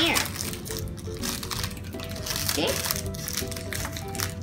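Pink metallic foil wrapper crinkling and crackling in short bursts as it is handled and cut with scissors, over background music with a light, steady melody.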